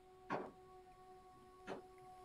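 The faint, steady opening note of soft new-age style background music fading in, with two short clicks, one about a third of a second in and one near the end.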